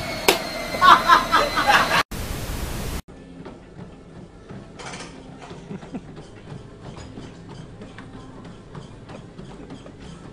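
A woman laughing loudly, then about a second of even hiss, followed by much quieter room sound with faint irregular taps.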